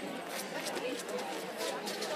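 Indistinct chatter of people standing nearby, with no clear words, and a few short faint clicks.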